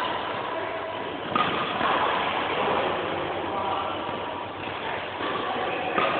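Steady background noise with indistinct voices, and one sharp hit about a second and a half in.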